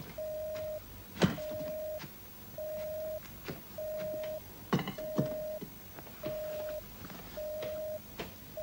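Telephone busy signal: one steady mid-pitched tone beeping on and off at an even pace, about once a second. A few knocks and thuds of objects being handled sound over it, the loudest about a second in.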